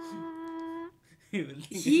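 A voice holding one long hummed note, its pitch wavering slightly, which stops a little short of a second in; speech follows near the end.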